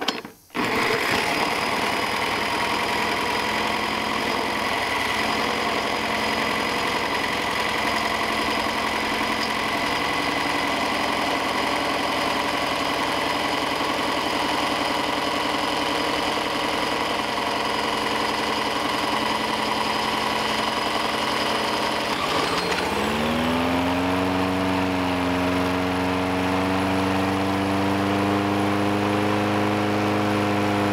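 A cordless drill on the flywheel nut spins a push mower's small four-stroke engine over steadily for about 22 seconds, with a steady whine. The drill then stops and the engine catches and runs on its own, its pitch rising and then holding steady, fed only by gas vapor drawn from a bubbler canister with the fuel line blocked.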